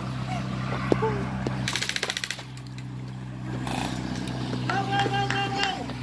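Airsoft gun firing a short rapid full-auto burst of clicks about two seconds in, over a steady low hum. A voice calls out near the end.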